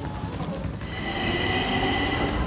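Metro train running through a station, with a low rumble and a steady high-pitched squeal that sets in about a second in and grows louder.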